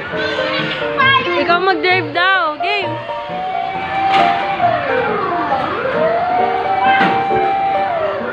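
Toy fire truck's electronic siren sound effect: a fast warbling yelp for about two seconds, then a slower wail that holds, falls, rises and holds again. Background music and children's voices run underneath.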